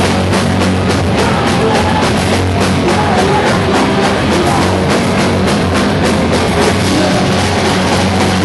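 Rock band playing live and loud: electric guitars and bass over a drum kit, with drum and cymbal hits at a steady driving beat.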